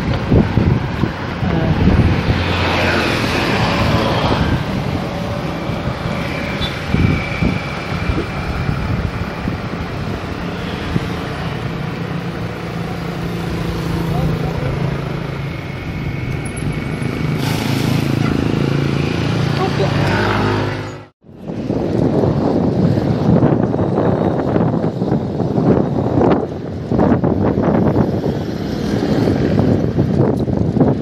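Road traffic and wind rushing over the microphone of a camera carried on a moving bicycle, with a low engine hum through the middle. The sound drops out for a moment about two-thirds of the way through, then comes back with rougher wind buffeting.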